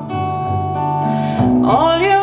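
Acoustic-guitar music with a sung line, played back through Focal hi-fi bookshelf loudspeakers and picked up in the listening room. A note glides upward in the second half.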